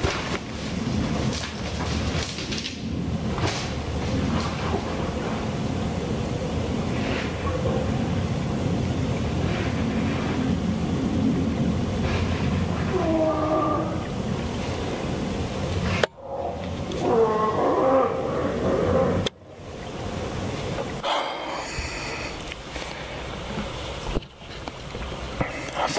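A black bear, hit by a bow shot and out of sight in the woods, giving its death moan: drawn-out, wavering moaning calls, a short one about halfway through and a longer, louder one a few seconds later, over a steady background hiss.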